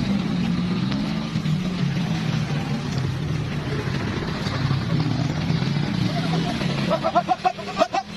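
A motor vehicle engine runs steadily nearby, with voices; near the end several people call out.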